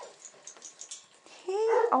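Weimaraner puppy whining: a loud, high, wavering whimper near the end, after a second and a half of faint clicks.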